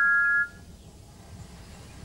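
A two-note steam engine whistle holding one steady blast that cuts off about half a second in, leaving only a faint low hiss.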